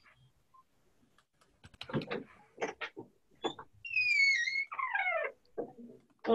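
An animal's calls: a string of short noises, then a high, wavering call about four seconds in, followed by a call that falls in pitch.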